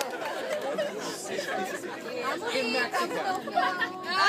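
A group of people chattering, several voices talking over one another at a low level.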